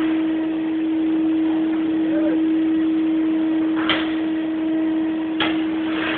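A steady mid-pitched hum with faint voices in the background, and a few sharp knocks in the second half.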